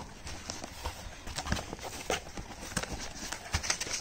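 Cardboard box flaps and crumpled kraft-paper packing rustling, with irregular light knocks and clicks, as a small cardboard product box is lifted out of a shipping carton by hand.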